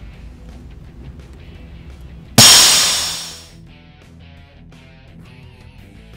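Compressed air bursting out of a Harley-Davidson Twin Cam cam plate's oil pressure relief valve as it pops off under rising bench-test air pressure. The loud hiss starts suddenly about two seconds in and fades out over about a second, over guitar music.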